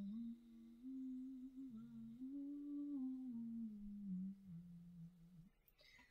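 A woman humming with her mouth closed in one long unbroken hum. It wanders slowly up and down in pitch like a loose tune, then tails off about five and a half seconds in.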